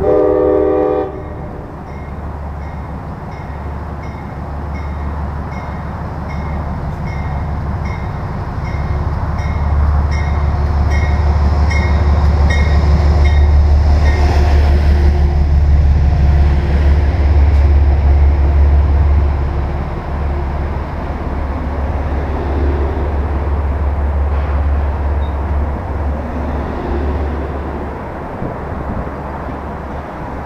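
Passenger train running in on the near track: a short horn blast at the start, then a bell dinging about twice a second for the first half. Under these runs a heavy rumble of the train, loudest as the locomotive and coaches pass through the middle and easing off near the end.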